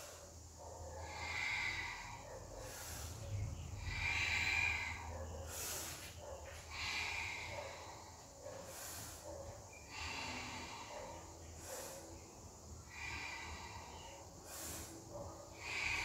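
A woman breathing audibly through the nose while exercising, slow deep inhales and exhales every few seconds, over a faint low hum.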